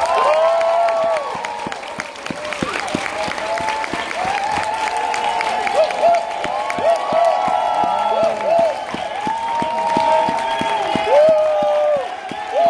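A large theatre audience applauding and cheering, with many high whoops and shouts over the clapping. It breaks out all at once and keeps up steadily.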